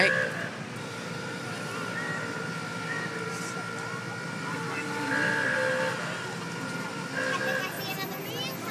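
Street crowd noise with a slow-moving vehicle's engine running. A thin, steady high tone holds from about a second in until near the end.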